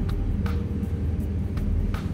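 Steady low drone of an airliner cabin, with soft background music of short melodic notes over a light regular tick.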